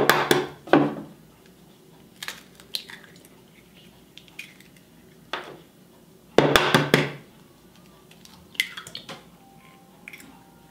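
Raw eggs being cracked against a wooden tabletop and broken open over a glass jar: a sharp knock right at the start and another louder one about six and a half seconds in, with smaller shell clicks and taps in between.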